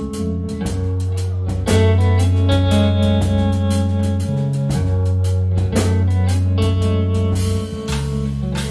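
Instrumental trio playing live: electric bass holding low notes that change a few times, electric guitar playing over it, and a drum kit keeping a steady beat on cymbals and drums.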